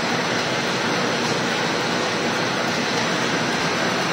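Automatic cardboard V-grooving machine running, a steady even mechanical noise with no distinct knocks.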